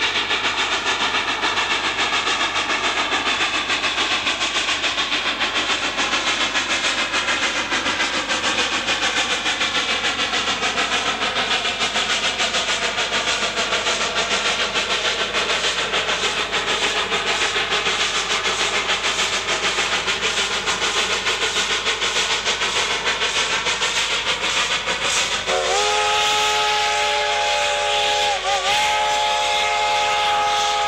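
Cumbres & Toltec No. 487, a three-foot-gauge K-36 Mikado steam locomotive, working upgrade with a loud, steady rush of exhaust and running noise. Near the end its chime whistle sounds a long blast, breaks briefly, and sounds again.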